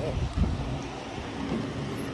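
Wind buffeting a phone microphone: an uneven low rumble, with a thump about half a second in.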